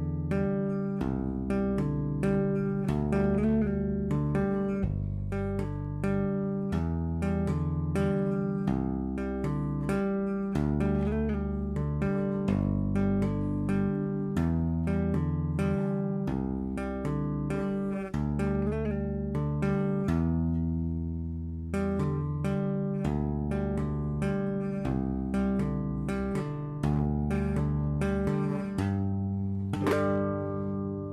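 Electric bass played with two-hand tapping, slowly. The left hand hammers a bass line of low notes, each held for a second or two. Over it the right hand taps a repeating melody of higher notes (G, D and A) around the twelfth fret.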